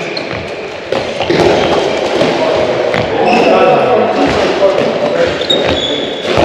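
A handball being thrown and caught two-handed, with a few sharp smacks of the ball on hands in an echoing sports hall, over voices.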